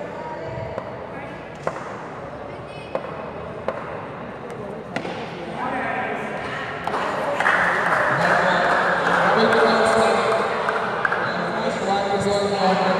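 Several sharp single knocks of a ball striking the hard floor of an indoor sports hall, over the echoing voices of players. About seven seconds in, the voices swell into loud shouting from many people at once.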